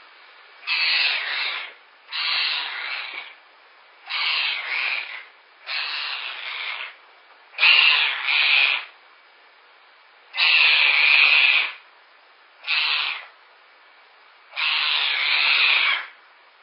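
A young animal's harsh, raspy calls, eight in a row, each about a second long with short pauses between.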